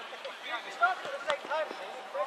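A football kicked, a sharp thud a little over a second in, amid distant shouts from players.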